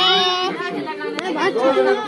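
Several people talking and calling out over one another in excited chatter.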